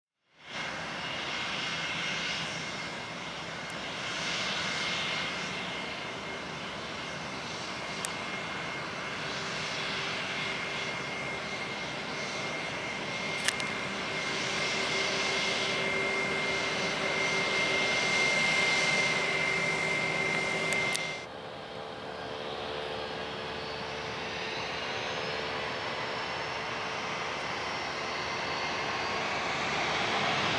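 Airbus A320 jet engines running as it taxis, with a steady whine over the engine noise. About 21 s in the sound changes abruptly to another jet airliner's engines on the runway, their whine rising and growing louder near the end as they spool up for takeoff.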